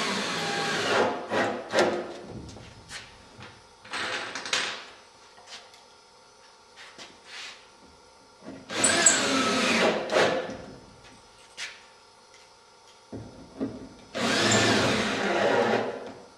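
Power drill driving screws in four short bursts, each about a second and a half, its motor pitch rising and dropping as each screw bites, with small handling clicks between. The screws fasten batten strips that pull the plywood skin down onto the wing ribs.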